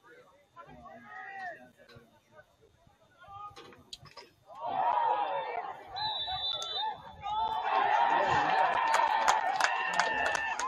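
Spectators and players shouting and cheering as a lacrosse goal is scored. The cheer breaks out about four and a half seconds in and swells again a few seconds later, with a few sharp clacks mixed in.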